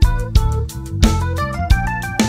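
Instrumental jazz from a five-piece band: a stage keyboard plays runs of notes over a bass line and drum kit, with sharp drum hits through the passage.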